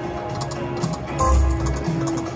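Konami video slot machine playing its game music and sound effects as the reels spin and land, with a louder, deep sound effect coming in just past the first second.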